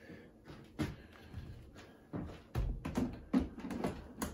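Scattered light knocks, scuffs and rubbing from hands handling a pack of two sealed lead-acid UPS batteries strapped together with a sticker on a tabletop.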